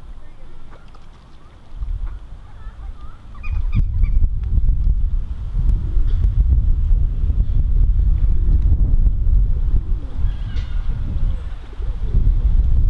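Wind buffeting the microphone, loud and gusty from about three and a half seconds in. Over it come short calls of black-headed gulls and some goose honking.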